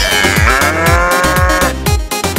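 A cow mooing once, a long call of about a second and a half, laid over an electronic dance beat.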